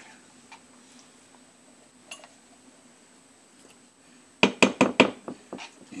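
A spoon knocking against a stainless-steel pot, about six sharp clinks in quick succession lasting about a second, near the end of a quiet stretch.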